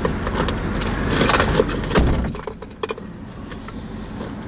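Clinking and rustling of things being handled inside a car, busiest in the first two seconds, with a dull thump about two seconds in.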